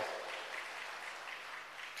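Faint applause from an audience, an even spread of clapping with no voice over it.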